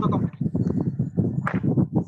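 A person's voice over the online class audio, choppy and broken into rapid stutters so that no words come through clearly.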